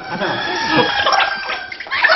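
Men laughing hard.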